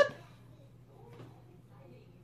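The end of a woman's rising question, then quiet room tone with a steady low hum.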